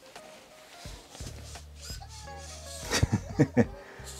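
Eilik desktop robots playing their built-in program's music and sound effects through their small speakers: a tune with a falling swoop about two seconds in, then a quick cluster of short, loud effects near the end.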